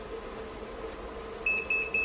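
About four quick, short electronic beeps near the end, all on one high pitch, over a steady faint hum.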